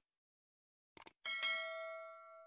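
Subscribe-button sound effect: a couple of quick mouse clicks about a second in, then a small notification bell that dings twice in quick succession and keeps ringing.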